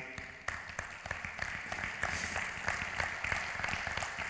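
Audience applauding: a steady, dense patter of many hands clapping.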